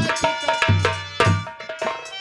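Instrumental folk stage music: a hand drum plays a quick rhythm of sharp strokes and deep bass thumps over steady held melodic notes.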